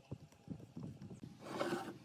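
Small irregular clicks and creaks of a metal screw hook being twisted by hand into a pine board, then a brief louder scraping rustle near the end.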